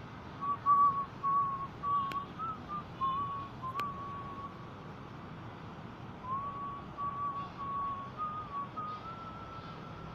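A slow whistled melody in a single pure tone, moving in small steps among a few close notes and pausing for about two seconds in the middle. Two brief clicks come at about two and four seconds in.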